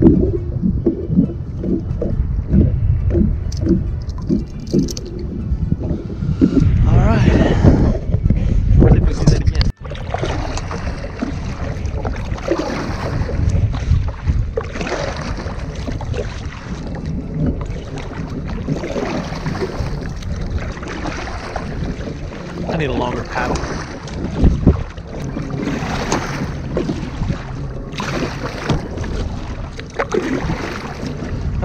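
Wind rumbling on the microphone, with water splashing around a kayak; the sound breaks off suddenly about ten seconds in and resumes rougher.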